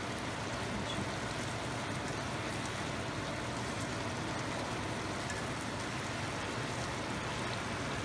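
Chicken and potato curry simmering in a wok on a gas burner: a steady sizzling hiss with faint ticks of popping bubbles, while a nylon spatula stirs it.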